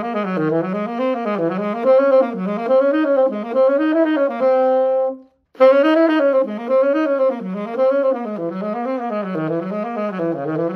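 Solo saxophone playing fast eighth-note runs of a C altered-scale exercise, climbing through the scale in repeated up-and-down cells. About halfway through it holds one long note to close the ascending version, breaks off briefly for a breath, and then starts the descending version.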